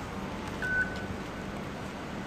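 A single short electronic beep, about half a second long, with a faint tail, over steady outdoor background noise.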